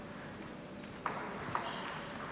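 Celluloid table tennis ball clicking twice, about half a second apart, over the murmur of a sports hall.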